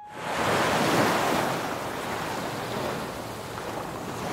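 Ocean surf breaking on the shore: a steady rush of waves that comes in suddenly at the start, swells within the first second and then eases slowly.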